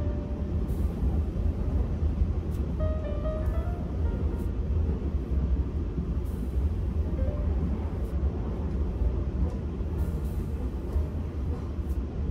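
Music over the steady low rumble of an Auckland electric commuter train running along the track, heard from inside the carriage.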